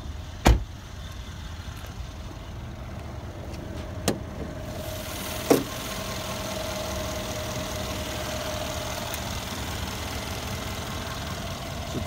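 Mercedes-Benz E550's twin-turbo V8 idling steadily, growing louder and clearer once the hood is up about five seconds in. A heavy thump comes about half a second in, and two sharper clicks come around four and five and a half seconds in as the hood is unlatched and raised.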